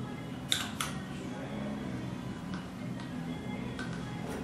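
Soft background music, over which a 13 mm ratchet wrench loosening a wheelchair's wheel bolt gives two sharp clicks about half a second in, then a few fainter clicks later.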